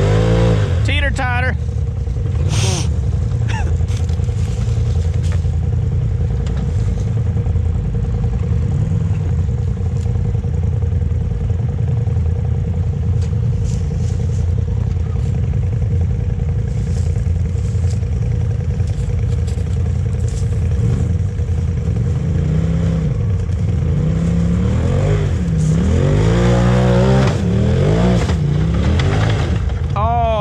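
Side-by-side UTV engine working at low speed as it crawls over rocks, with revs rising and falling in bursts near the start and again near the end.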